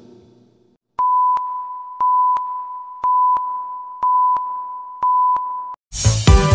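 Five-second broadcast countdown cue for affiliate stations: a steady high beep tone pulsing once a second, five times, each pulse starting with a click and fading a little before the next. It starts about a second in and cuts off just before the end.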